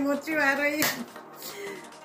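A woman's short wordless vocal sound, then a single sharp knock of something handled on the table a little under a second in.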